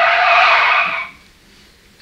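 A loud gust of wind buffeting a microphone, about a second long, cutting off suddenly, heard played back through a hall's speakers.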